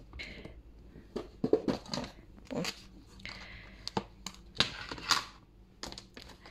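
Snap-on lid of a plastic food container being prised off: a run of sharp plastic clicks and scrapes, with a longer scraping stretch about three seconds in.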